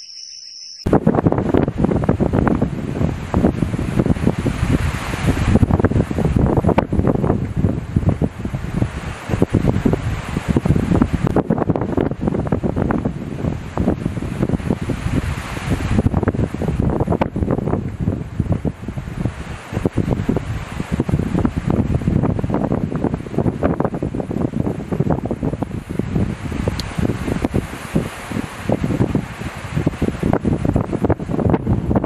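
Wind buffeting the microphone: a loud, rough, pitchless rush of noise, heaviest in the deep range and constantly fluctuating, that starts abruptly about a second in.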